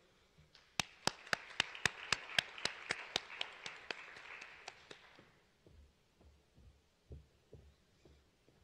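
Audience applause: a small crowd clapping, with one close clapper's sharp claps at about four a second standing out, fading away about five seconds in. A few soft low thumps follow near the end.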